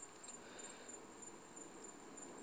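Crickets chirping: a faint, steady, high-pitched trill.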